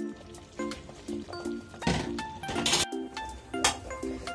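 Background music: short repeated notes with a few sharp percussive hits, briefly cutting out just before three seconds in.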